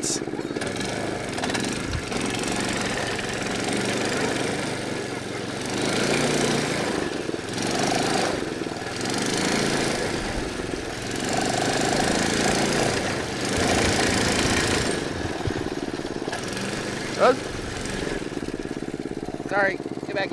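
Small go-kart engine running and revving while the live-axle kart spins donuts on pavement, with its tyres scrubbing and dragging. The sound swells and fades in waves every couple of seconds as the kart circles, because the locked axle forces one wheel to drag through each turn.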